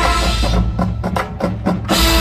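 Marching band's held chords cut off about half a second in, leaving a quick run of sharp, evenly spaced percussion hits before the full band comes back in at the end.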